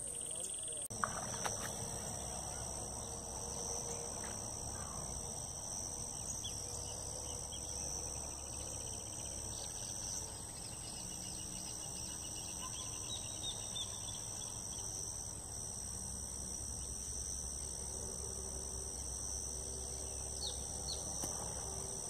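Steady, high-pitched insect chorus: two continuous shrill tones with no break, over a low steady rumble.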